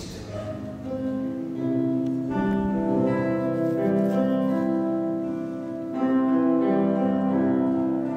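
Grand piano playing slow, held chords, with no singing.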